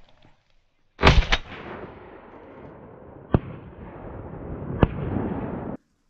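Shotgun shots during a duck hunt: two loud reports in quick succession about a second in, then two more sharp single reports, one in the middle and one near the end, over a steady rushing noise that cuts off suddenly near the end.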